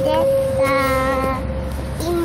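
A young child singing, holding long notes.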